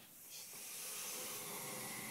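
Small passenger lift setting off: a steady hiss of the lift's travel that rises within the first half second and then holds.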